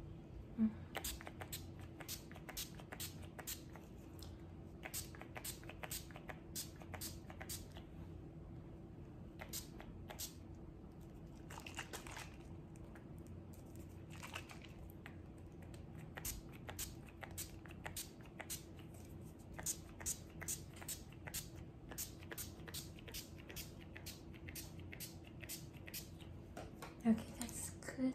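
Close-microphone crackling of hair being handled and scrunched, a dense run of quick, crisp clicks, over a faint steady hum.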